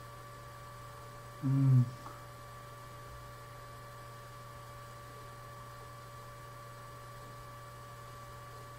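Steady electrical mains hum on the recording, with a brief, low vocal sound from the man, like a murmur, about one and a half seconds in.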